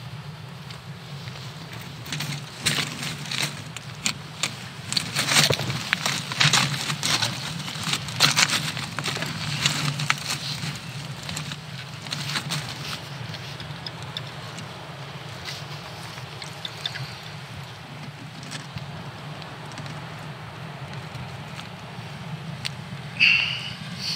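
Close handling noise: waterproof jacket fabric and hands rustling and crackling against the microphone, densest for about ten seconds and then thinning out, over a steady low rumble.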